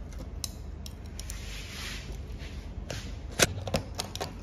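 Removed chrome car badges clicking against one another in the hand: a few sharp clicks, the loudest a little after three seconds in, with a soft rustling hiss shortly before them.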